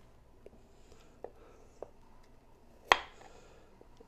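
Quiet kitchen room tone with a few faint clicks and one sharp knock about three seconds in: a chef's knife working on a wooden cutting board as radishes are trimmed.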